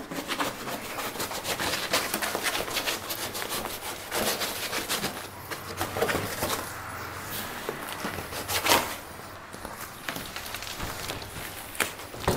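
Large corrugated cardboard box being torn and pulled open: irregular ripping, rustling and crackling of cardboard flaps, with one louder rip about two-thirds of the way through.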